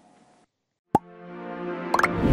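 Closing music sting of the broadcaster's end card: after a brief dead silence, a sharp hit about a second in starts a sustained chord that swells louder, with a second accent near the end.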